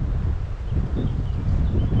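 Wind buffeting the microphone: a steady, fluctuating low rumble.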